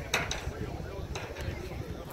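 Indistinct voices of people talking in the distance over a low outdoor rumble, with a few brief hissing bursts of wind on the microphone.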